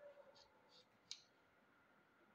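Near silence, broken by a few faint ticks and one short, sharp click about a second in, from a brush pen being handled over a paper worksheet.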